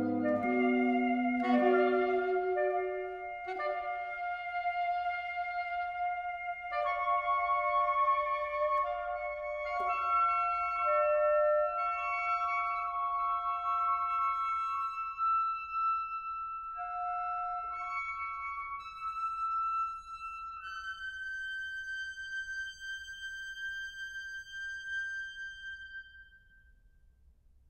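Saxophone quartet playing contemporary chamber music. The low voices drop out in the first couple of seconds, the upper saxophones hold long overlapping notes, and the texture thins to a single high sustained note that fades away near the end.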